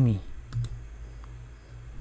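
Two quick computer mouse clicks about half a second in, with a fainter click a little later, over a steady low electrical hum.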